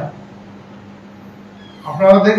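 A man's speech into news microphones breaks off, leaving a short pause of faint room noise with a steady low hum, and his voice starts again just before the end.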